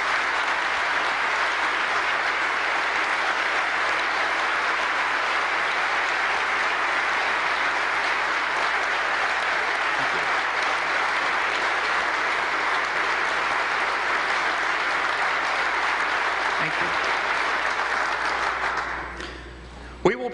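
Sustained applause from a large audience, a steady dense clapping that dies away about a second before the end.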